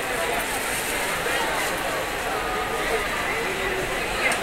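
Indistinct voices of people on a busy street, over a steady background of street noise.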